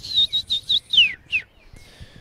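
A bird singing: a quick run of short high chirps, then two falling notes about a second in.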